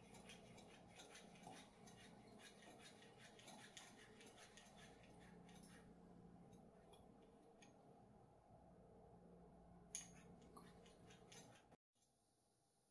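Faint, quick clicking and rubbing from a Dr. Drop hand-pump leak tester being stroked to pressurize a PC water-cooling loop for a leak test. There is one sharper click about ten seconds in, and the sound cuts off just before the end.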